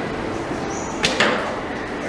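A traditional wooden bow being shot: two sharp clacks a fraction of a second apart about a second in, the string's release and the arrow striking, over steady background noise.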